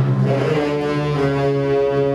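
Concert band of wind and brass instruments sustaining slow held chords, without drum hits, the harmony moving to a new chord about a second in.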